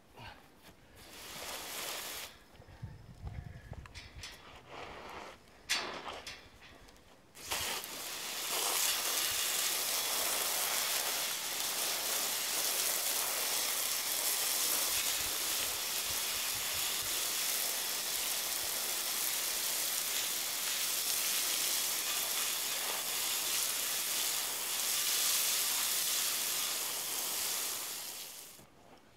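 A few scrapes and knocks, then a sudden steady hiss of water spraying from a hose nozzle. The spray starts about seven seconds in and wets down a freshly placed concrete patch. It stops just before the end.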